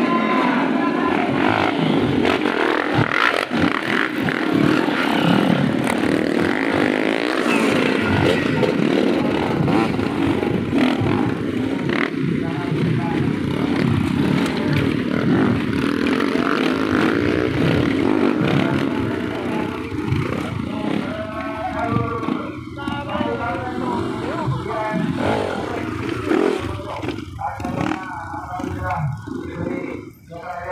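Many trail-bike engines running and revving together as a group of dirt-bike riders sets off, with people's voices mixed in. The din eases somewhat in the last third.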